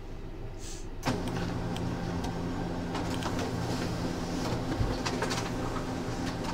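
A small motor starts up about a second in and runs with a steady hum, with scattered clicks over it.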